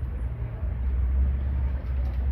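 A low, steady rumble of outdoor background noise; the cat does not meow.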